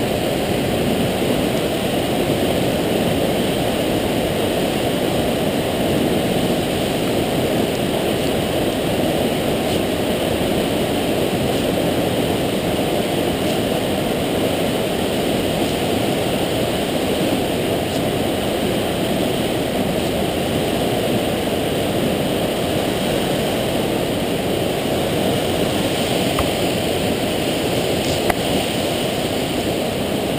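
A waterfall and mountain torrent rushing steadily, an even roar of water.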